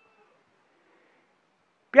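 Near silence with faint room tone during a pause in a man's speech. His voice resumes just before the end.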